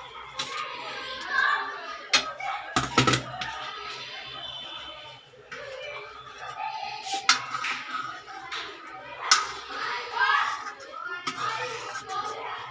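A steel ladle knocking and scraping in a steel kadhai of curry several times as paneer cubes are tipped in and stirred, over background music and voices.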